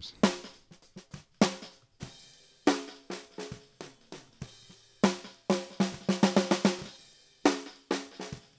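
A multitracked snare drum recording, top and bottom mics soloed together, playing a pattern of sharp ringing hits with softer strokes between. The bottom mic's polarity is being flipped back and forth, so the snare switches between a full sound with plenty of low end and a thin, weak one as the two mics cancel each other out.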